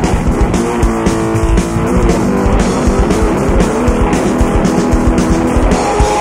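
Live heavy metal: a distorted electric bass guitar solo played over pounding drums, with a held, ringing chord about a second in.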